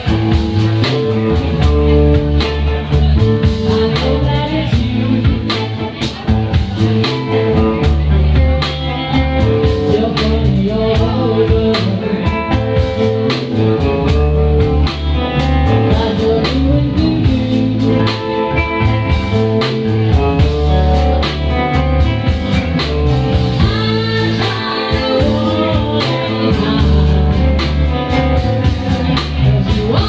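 Live blues band playing with guitar, bass guitar and drum kit, and a woman singing.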